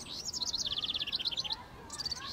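A small bird singing a rapid trill of high chirps for about a second and a half, slipping slightly lower in pitch. A second trill begins near the end.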